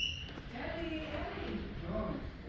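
Indistinct speech, with a short high-pitched blip right at the start.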